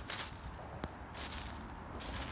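Footsteps through dry fallen leaves, with rustling and one sharp snap a little under a second in.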